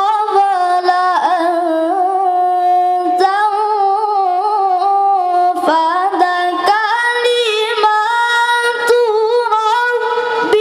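A boy's high voice reciting the Qur'an in melodic tilawah style into a microphone, holding long, ornamented notes, with short breaks between phrases.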